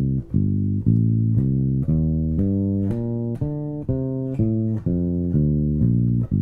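Electric bass played fingerstyle: a slow run of single sustained notes, about two a second, stepping through an arpeggio pattern, the "evens and odds" sequence over the G minor scale.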